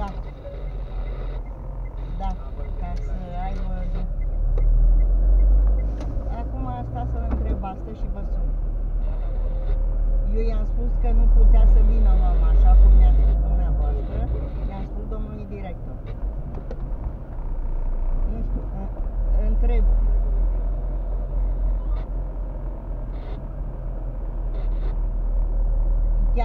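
Low rumble of a car's engine and road noise heard from inside the cabin while driving slowly. It swells and eases several times, with faint voices talking underneath.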